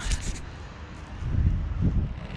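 Wind buffeting the microphone: a low, uneven rumble that swells about a second and a half in.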